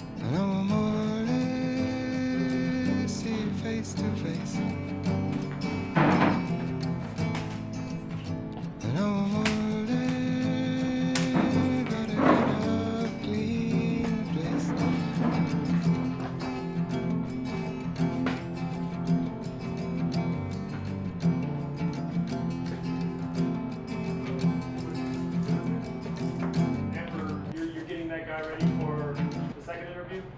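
Background music: a song with sustained melodic lines and sliding notes, played under the pictures rather than coming from the scene.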